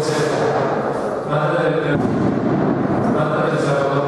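A group of voices chanting a Catholic prayer in unison, a steady, continuous drone of recitation.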